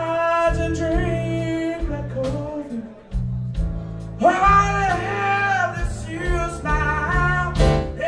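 Live blues-rock band: a male lead vocal sings two phrases of long held, bending notes over electric guitar, bass and drums.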